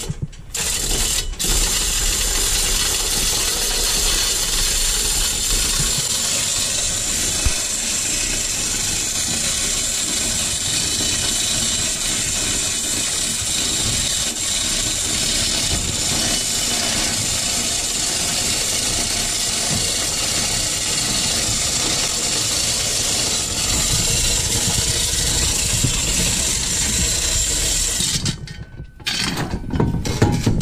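Manual chain hoist being worked by hand: the hand chain rattles through the wheel and the ratchet pawl clicks steadily as the load chain is taken up. A short break comes about a second in, and another shortly before the end.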